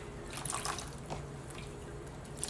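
A chalkboard eraser being rinsed by hand in a plastic tub of water: a few light splashes and drips.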